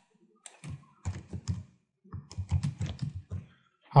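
Typing on a computer keyboard: two short runs of keystrokes, the second faster and longer than the first.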